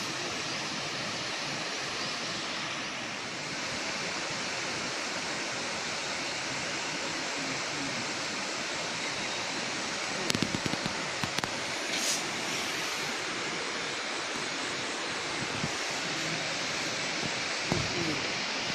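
Steady rush of a shallow river running over rocks, with a few short clicks about ten to twelve seconds in.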